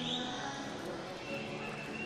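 Faint, steady background noise of an indoor swimming arena between commentary lines, with a thin high tone held near the end.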